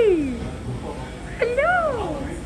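A domestic cat meowing twice: the tail of a long meow that slides down in pitch and fades about half a second in, then a shorter meow that rises and falls about a second and a half in.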